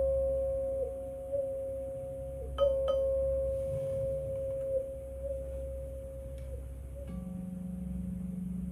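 Crystal singing bowls ringing, each struck tone holding a long, slowly fading ring. One is struck again about two and a half seconds in and more faintly near the end, when a lower steady tone joins.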